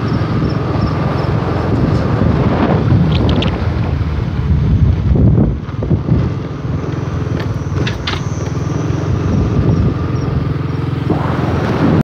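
A vehicle's engine running steadily under a heavy rush of wind noise on the microphone while driving along a wet road in a storm, the buffeting swelling about halfway through. A few light clicks come over the top.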